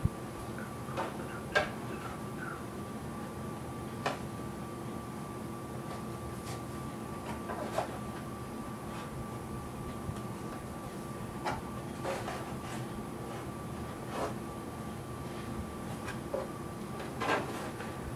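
Light scattered clicks and taps of a steel rule and pencil being handled against a guitar's wooden rims as positions are marked, over a steady faint hum; two of the taps, about a second and a half in and near the end, are louder than the rest.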